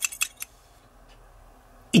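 A few quick light clicks and clinks of small hard objects being handled in the first half-second, then quiet room tone.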